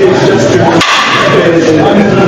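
Loud, continuous voices of a group of people, with one sharp click about a second in.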